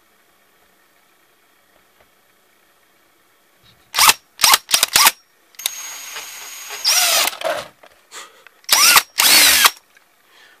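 Electric drill with a 9/64-inch bit boring a small hole in the plastic shell of a VHS cassette. After about four seconds of near silence, the drill is run in a string of short trigger bursts, its motor whine rising and falling each time, with a steadier run in the middle and two longer bursts near the end.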